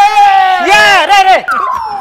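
A man's loud, drawn-out celebratory shouts of "Ay! Ay-ay-ay!": long held cries that slide down in pitch, with a last falling cry near the end.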